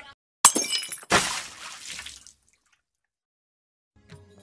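A crash-like editing sound effect: a sharp hit, then about half a second later a louder crash whose noisy tail fades out over about a second.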